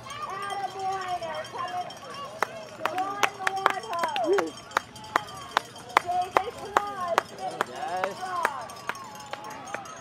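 Spectators calling out and cheering runners in at a race finish, with one person clapping close by: sharp claps at about two to three a second from about two seconds in until near the end.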